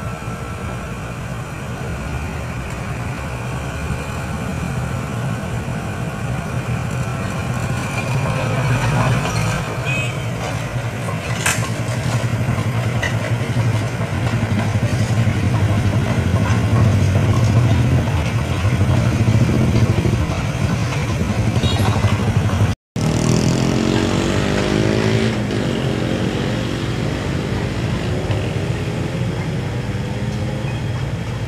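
Komatsu hydraulic excavator's diesel engine running under load with a steady low hum, growing louder through the middle as it works. After a break about 23 s in, an engine is heard whose pitch rises and falls.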